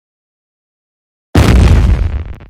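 Silence, then a sudden, very loud explosion sound effect about a second and a third in, deep and noisy, dying away over about a second.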